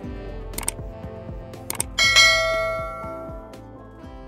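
Subscribe-animation sound effects over background music: two quick double clicks like a mouse button, then a bright notification bell chime about two seconds in that rings and fades over about a second and a half.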